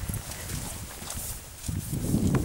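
Bumps, knocks and rustling from a handheld camera being swung about, with muffled thumps and wind on the microphone.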